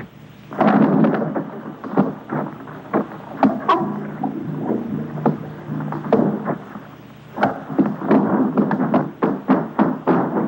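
A rapid, irregular run of loud bangs and crashes, a dozen or more sharp hits with noisy tails, over a continuous rumble: film sound effects of an alarm-raised action scene.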